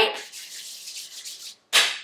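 Hands rubbing together, a soft, dry rubbing hiss lasting about a second. Near the end comes a short, louder breathy burst.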